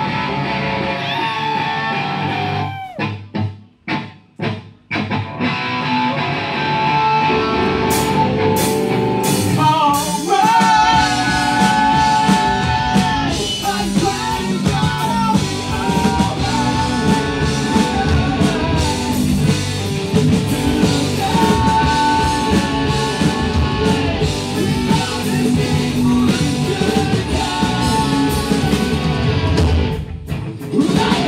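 Rock band playing live on electric guitars, bass and drum kit. It opens with a guitar figure and a few stop-start hits with short silences between them. The full band comes in about six seconds in and gets heavier from about ten seconds.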